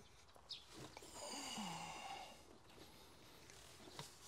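A faint breathy sigh from a person about a second in, with a short low falling voice in it. The rest is quiet apart from a light click.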